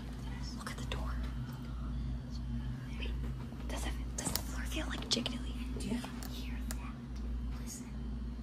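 People whispering, with hissy breathy syllables, over a steady low hum.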